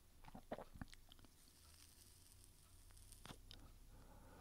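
Near silence: room tone with a few faint clicks, several within the first second and one a little past three seconds in.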